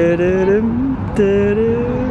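Two voices, one lower and one higher, humming a tune together in long held notes, breaking off briefly about halfway and going on with sung 'da, da'.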